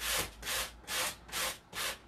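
Hand sanding block scraping in quick, even downward strokes, about two and a half a second, along the wooden edge of a tabletop. The sanding trims the overhanging decoupaged wrapping paper off flush with the edge.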